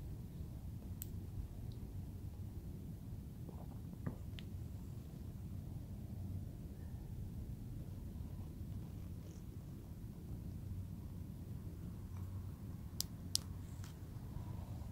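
Klarus 360X3 flashlight's tail-cap switch clicking twice, about half a second apart near the end, as the light is switched off, over a low, steady background rumble.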